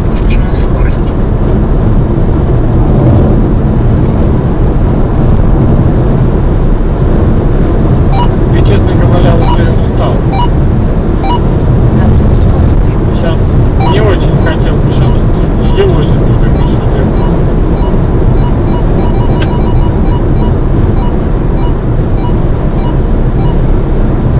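Steady, loud low rumble of a car cruising on a motorway at about 120 km/h, heard from inside the cabin.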